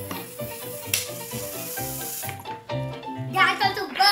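Background music with a melody of short, stepped notes. Over it, for about the first two seconds, a steady hiss of breath as a child blows hard into a plastic water bottle to force water out through a straw. A child's voice, laughing, comes in near the end.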